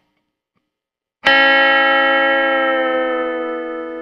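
Electric guitar: a three-string chord is picked about a second in and left to ring, fading slowly, while one note slides down in pitch as the whole-step bend on the third string is let back down, in the manner of a pedal steel guitar.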